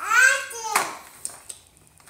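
A toddler's short, high-pitched vocal squeal, then a few light clicks and knocks.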